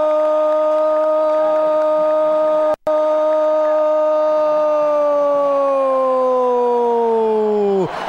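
A Brazilian football commentator's drawn-out goal cry, one long held "gooool" on a steady pitch. It breaks off for an instant about three seconds in, then slides lower in pitch over the last few seconds before stopping.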